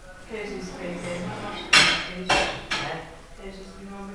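Metal spoon clinking against a ceramic bowl three times in quick succession about two seconds in, the first clink the loudest.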